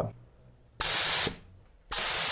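Pressure PPIG001 gravity-feed HVLP spray gun with a 1.3 mm nozzle spraying paint in two short bursts of hiss. The first burst comes about a second in and lasts about half a second. The second starts near the end.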